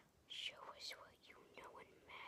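A boy whispering quietly to himself, a few soft hissy words.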